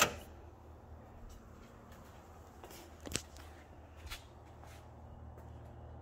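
A car's dashboard light switch clicks once, sharply, at the very start. Then quiet garage room tone with a low steady hum and a couple of faint knocks.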